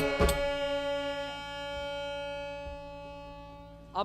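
Harmonium holding a steady sustained chord that slowly fades away, after a couple of drum strokes at the very start.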